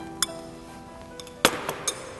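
Background music with a few sharp clinks and knocks of a metal cooking pot and bowl being handled. The loudest knock comes about one and a half seconds in.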